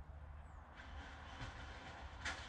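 Faint outdoor background: a low steady rumble with a soft hiss.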